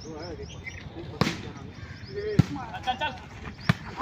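A volleyball being struck three times, about a second and a quarter apart, as the ball is passed and played over the net. Players' voices call faintly between the hits.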